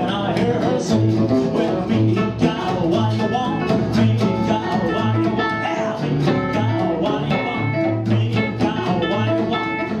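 Live rockabilly trio playing: acoustic rhythm guitar, electric lead guitar and double bass, the bass keeping a steady line of about two notes a second.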